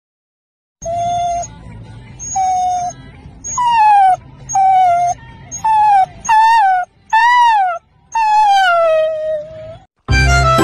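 A puppy howling: about eight high, wavering calls that rise and fall in pitch, starting about a second in, the last one long and sliding down.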